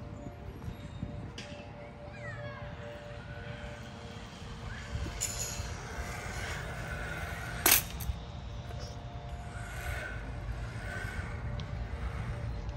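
Flying fox trolley running along its overhead cable, a faint steady whir under low wind rumble on the microphone, with one sharp knock about two-thirds of the way through.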